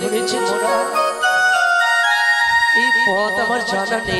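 Live Bengali folk-theatre song: male voices singing through a microphone, with an instrument playing a melody of held notes that step up and down. The voices drop out for about two seconds in the middle while the instrument carries the tune, then come back in.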